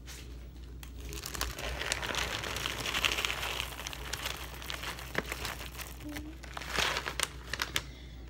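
Plastic snack packaging crinkling and rustling as it is handled: a bag of roasted sunflower kernels and a zip-top plastic bag, with a few sharp crackles in the second half.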